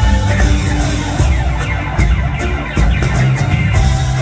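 Live rock band playing amplified, with electric guitars, bass and drums. The high end thins out for about two seconds in the middle while the bass and drum hits carry on.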